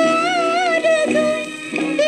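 Hindi film song played from a 78 rpm record: a high melody line held with a wavering vibrato over orchestral accompaniment, the note breaking and moving on about a second in.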